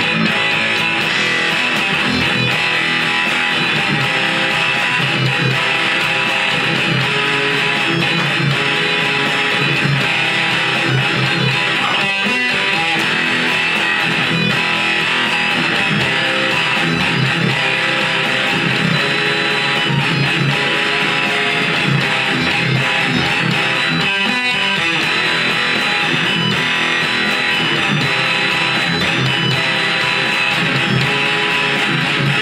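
Ibanez electric guitar playing a rhythm guitar part in E standard tuning along with a Guitar Pro backing track, with two short breaks about twelve and twenty-four seconds in.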